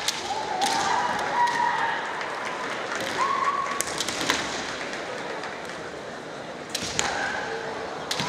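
Kendo fencers' kiai: several drawn-out shouts, one lasting over a second near the start, another about three seconds in and more near the end, mixed with sharp clacks and knocks of bamboo shinai and footwork on the wooden floor, echoing in a large hall.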